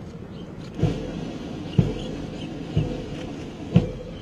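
Military band starting to play about a second in: a bass drum beating about once a second under sustained brass notes.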